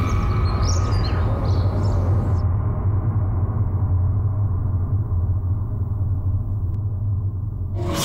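Low, steady drone of a suspense background score, with the upper sounds dropping away about two seconds in.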